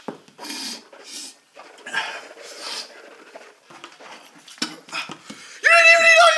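A man's short, breathy gasps and spitting over a plastic bucket, his mouth burning from habanero pepper, then a loud, high-pitched laugh near the end.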